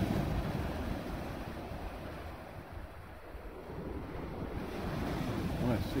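Sea surf breaking and washing up a shingle beach, with wind buffeting the microphone. The wash fades about halfway through, then builds again toward the end.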